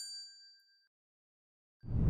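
Notification-bell chime sound effect ringing out and fading away. A low rush of noise starts near the end.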